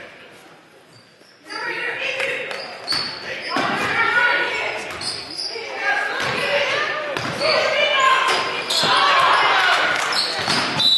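A basketball bouncing on a hardwood gym floor amid indistinct shouting from players and onlookers in a large gymnasium. Quieter for the first second or so, then voices and bounces pick up from about a second and a half in.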